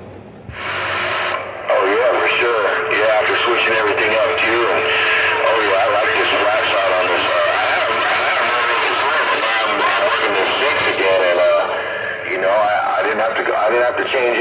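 A distant station's voice coming through a CB radio's speaker, heavily mixed with static so that the words are hard to make out.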